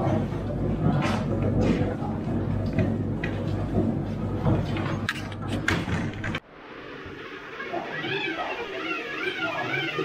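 Building-site noise from a crew rendering walls: a steady low machine hum, scattered knocks and clatter, and workers' voices. The sound cuts off suddenly about six seconds in, and a quieter room follows with people talking.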